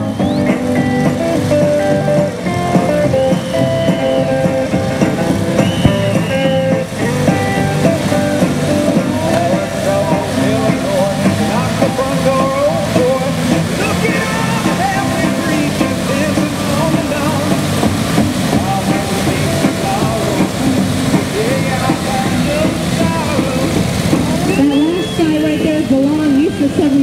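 Music over loudspeakers mixed with the running engines of a group of vintage kickstart motorcycles, steady and loud throughout.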